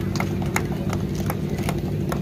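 A small group of people clapping by hand: scattered, irregular claps, several a second, over a steady low hum.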